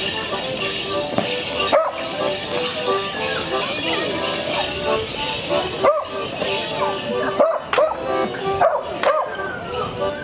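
A Morris dance tune played on an accordion, with the dancers' leg bells jingling in time. A dog barks several times over the music, short yelps about two seconds in, around six seconds, and twice near the end.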